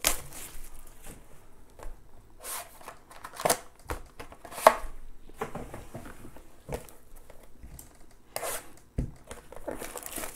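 Cardboard boxes and foil-wrapped packs of 2018 Panini Plates & Patches football cards being handled and set down on a table mat: scattered light knocks, taps and rustles, one every second or so, the sharpest about halfway through.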